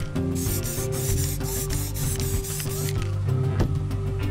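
Aerosol spray-paint can hissing in quick pulses for about two and a half seconds, over background music.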